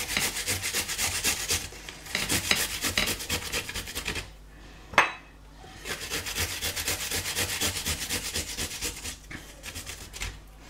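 Garlic being grated on the fine side of a metal box grater: quick, rasping back-and-forth strokes in runs, pausing about halfway for a single sharp knock, then starting again.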